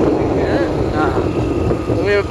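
Motorcycle running on the move, its engine noise mixed with wind buffeting the microphone. A faint voice is heard partway through.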